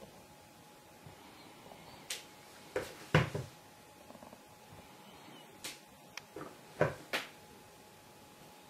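Rubber stamp being inked and pressed down onto acetate on a tabletop: a scattered series of sharp taps and knocks, the loudest about three seconds in and again near seven seconds.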